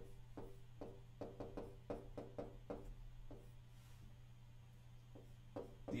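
Stylus tapping and sliding on the glass of a large touchscreen display as a word is handwritten: a quick series of faint knocks over the first three seconds, then a few more near the end, over a steady low hum.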